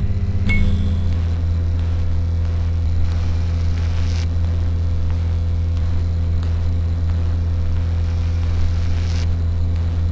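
A steady, loud electrical buzz, the hum of a lit neon sign, with a small click about half a second in.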